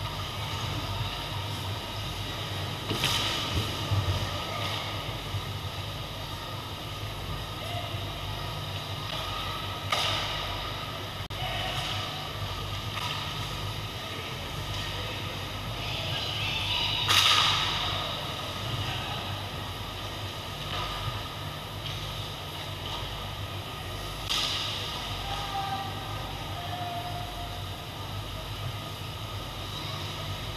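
Ice hockey in play on an indoor rink: a steady low hum and the scrape of skate blades on ice, broken by about five sharp clacks of sticks and puck, the loudest a little past the middle.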